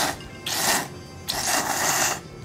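Tsukemen noodles being slurped from the dipping bowl: a slurp that tails off just after the start, then two long slurps, the second one longer.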